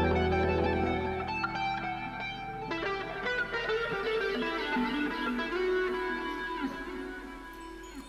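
Instrumental score music. A low held note stops about a second and a half in, under many ringing higher notes, and the whole slowly gets quieter toward the end.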